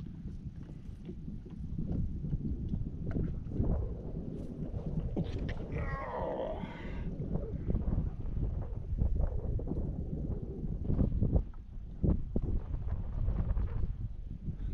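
Wind rumbling on the microphone on an open boat, with scattered small knocks and clicks from the boat and fishing gear. About six seconds in, a brief higher wavering sound rises over the rumble.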